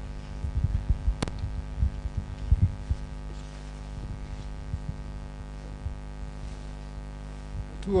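Steady mains hum with many even overtones from the public-address sound system while no one speaks, broken by scattered low thumps in the first few seconds and a single sharp click about a second in.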